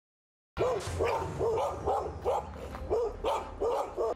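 A dog barking over and over, about three barks a second, starting about half a second in.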